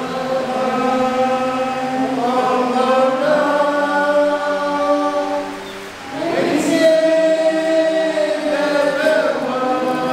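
A group of men singing a church song together in long, held notes, with a short pause between phrases about six seconds in.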